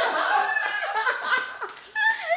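Women laughing loudly together in choppy bursts.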